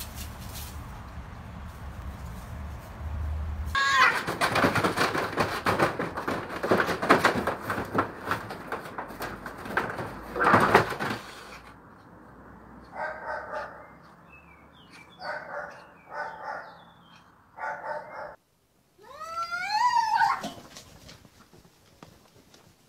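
Domestic cats fighting. From about four seconds in there is a loud, noisy scuffle with screeches. After that come several drawn-out yowls, each a second or so long, and then one long yowl near the end that wavers up and down in pitch.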